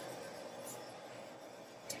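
A quiet pause with only a faint, steady hiss of room tone; no distinct sound.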